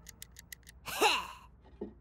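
Cartoon sound effects: a fast run of faint light clicks, about seven a second, then about a second in a short vocal sound falling in pitch.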